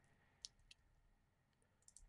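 Near silence, broken by a few faint clicks of computer keyboard keys.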